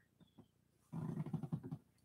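A few faint clicks, then about a second in a low, quiet voice, much softer than the man's normal speech, lasting under a second.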